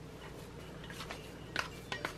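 Quiet room tone with a few faint, light clicks and taps near the end as cookie dough is handled with a plastic bench scraper at a glass mixing bowl and sheet of plastic wrap.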